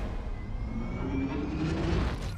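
Film sound-effects mix: a deep, steady rumble with a rising, aircraft-like roar, as something rushes down a fiery tunnel.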